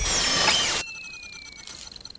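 Logo sting sound effect: a loud rushing noise that cuts off under a second in, leaving high ringing tones and a slowly falling tone that flutter and fade out near the end.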